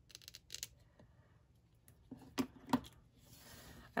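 Small scissors snipping paper: a few quick, crisp snips in the first second, followed near the end by soft paper handling.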